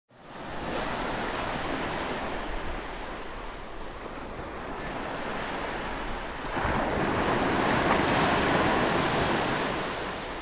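A steady rushing noise like surf washing, fading in at the start and swelling louder about six and a half seconds in.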